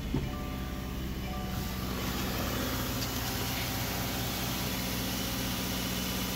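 A Subaru's boxer engine is started by push button, heard from inside the cabin. It catches right away and settles into a steady idle. A higher hiss comes in after about two seconds.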